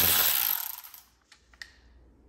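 Cordless electric ratchet with an 8 mm socket spinning out the radiator's mounting bolt, stopping about half a second in. A couple of light clicks follow.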